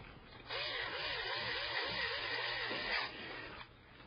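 A screwdriver driving a mounting screw for the hard drive into the metal drive cage. It makes a steady grinding whir for about two and a half seconds with a pitch that wavers about three times a second, then stops.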